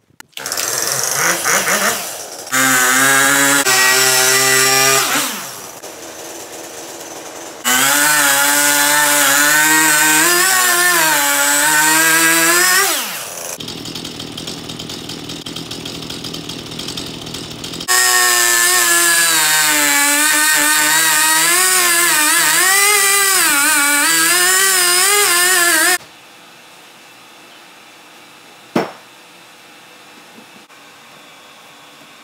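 Stihl chainsaw revved to full throttle three times, its pitch wavering as the chain cuts into an ash log, and dropping back to idle between cuts. The saw cuts off suddenly near the end, leaving quiet room tone and a single sharp knock.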